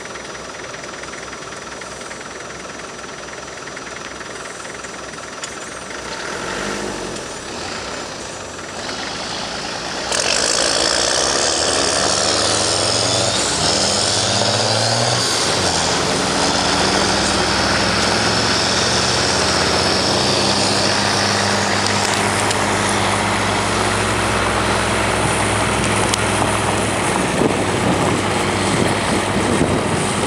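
Tracked armoured vehicles' engines running and their tracks moving as they drive off along a gravel track. About ten seconds in the sound becomes much louder, with the engine note rising and falling.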